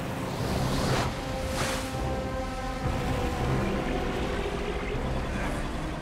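Sound effect of a rushing underwater storm current: a steady low rumble of churning water with two quick whooshes in the first two seconds, under held notes of dramatic background music.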